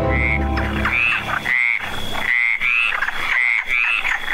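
Frogs croaking: short raspy calls that rise and fall in pitch, repeating about twice a second. A music bed ends about half a second in.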